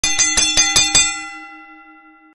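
Bell-like chime sound effect: a quick run of about six bright strikes in the first second, then the ring fading away.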